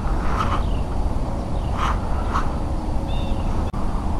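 A few short, faint bird calls, crow-like caws, over a steady low outdoor rumble, with one faint high chirp late on.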